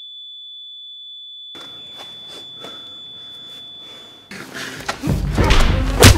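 A steady, high-pitched pure electronic tone, a sine-tone sound effect, with all other sound cut away. It stops about four seconds in, and knocks and noise come back near the end.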